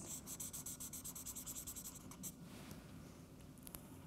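Felt-tip marker pen drawing on a paper pad: a quick run of short scratchy strokes over the first two seconds or so as small teeth are drawn in, then a few faint scratches. Faint overall.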